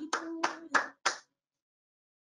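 Two people clapping their hands, a few claps about three a second, heard over a video call; the clapping stops about a second in and the line drops to dead silence.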